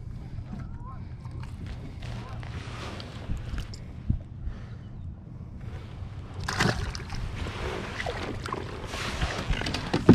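Water lapping and sloshing against a plastic fishing kayak's hull under a steady low rumble, with knocks and rustles of handling on board and a sharp knock near the end.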